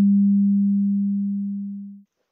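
A steady, low electronic tone on one pure note, slowly fading and cutting off at the end.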